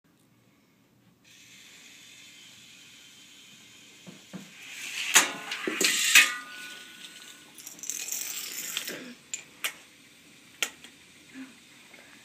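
Plastic toy parts of a homemade Rube Goldberg machine running: a stretch of clattering with two sharp clicks about five and six seconds in, then a few scattered single clicks.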